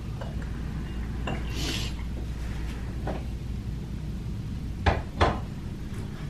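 Small porcelain teapot and teacups handled on a kitchen counter: a few light clinks, then two sharp knocks close together near the end as ceramic is set down, over a low steady hum.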